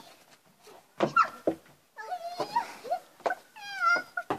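Several sharp knocks of hanging cardboard boxes being struck, the loudest about a second in. Between them come high, falling whining cries, the clearest one near the end.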